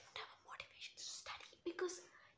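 A young woman whispering quietly in short breathy syllables, breaking into a brief voiced sound near the end.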